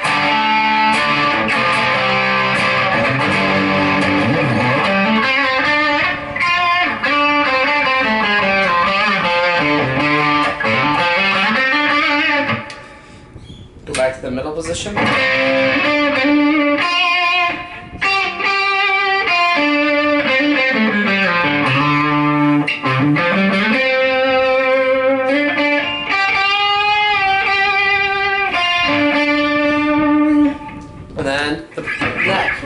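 Gibson Firebird Zero electric guitar played through an overdrive pedal, with riffs and single-note lines and a short break about halfway through.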